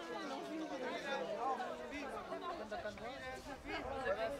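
Several voices talking and calling over one another on an open football pitch, no single voice clear, over a steady faint hum.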